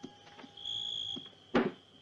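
Film soundtrack: a thin, steady high-pitched tone, then a single sharp bang about one and a half seconds in.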